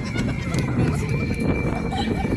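Wind buffeting the microphone with a steady low rumble, under children's voices and shrieks, with a thin high tone held steadily for about two seconds.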